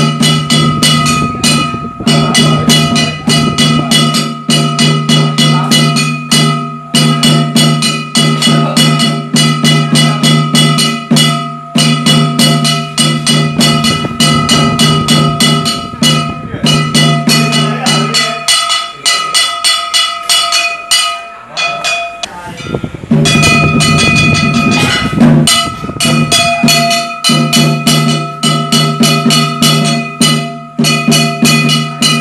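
Ritual percussion accompanying a dance: a fast, even beat of sharp strikes over ringing metal tones. The deep ringing drops out for about four seconds past the middle, then returns.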